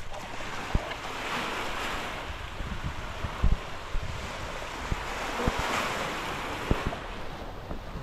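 Small waves washing onto a sandy beach, swelling twice, with wind on the microphone and a few low thumps, the strongest about halfway through.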